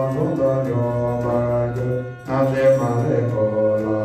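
Buddhist monks chanting prayers in unison in low, droning voices. The chant pauses briefly for breath about two seconds in, then resumes.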